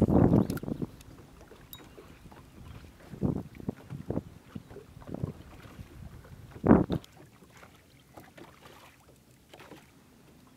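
Wind on the microphone and small waves lapping at a boat, heard as a few gusty, low bursts. The loudest bursts come right at the start and just before the seventh second, and it is quieter after that.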